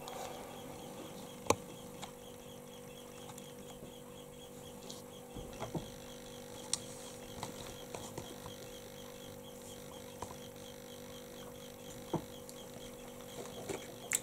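Steady faint electrical hum over low hiss, broken by a handful of light, sharp clicks and knocks scattered through.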